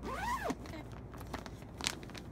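Plastic packaging on a bed pillow crinkling as it is handled. Two sharp crackles come near the middle and near the end, the second the louder, after a brief rising-and-falling pitched sound at the start.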